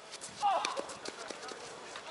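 A short vocal call from a player about half a second in, falling in pitch, over scattered light taps and footsteps on the hard tennis court.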